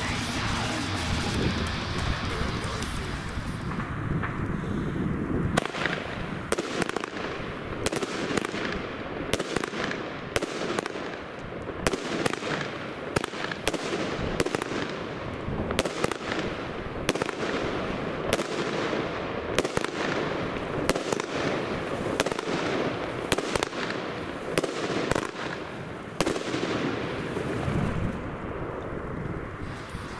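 A 25 mm consumer firework battery, the GAOO Happy Flower, firing its shells: from about six seconds in, a long run of sharp bangs, roughly one or two a second, until near the end. The shells burst as breaks with a deep, bassy report.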